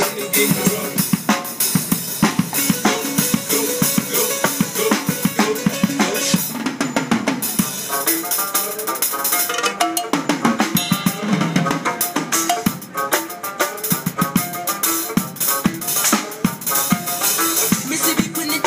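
Drum kit played in a fast, busy pattern of bass drum, snare and cymbal strokes, mixed with pitched electronic sounds from the drummer's electronic pad and loudspeaker setup.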